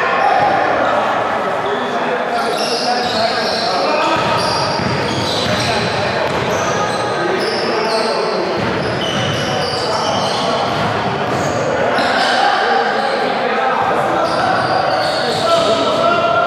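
Basketballs bouncing on a hardwood gym floor amid the chatter of several players' voices, echoing in a large gymnasium.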